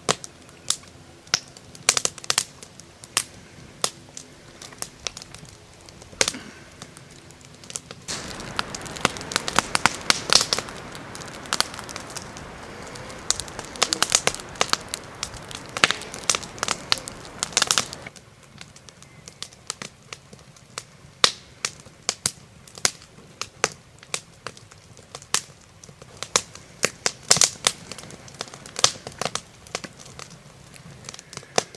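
Wood campfire crackling with many sharp pops. From about 8 to 18 seconds in, while the flames are high, a steady rushing sound of burning joins the crackle.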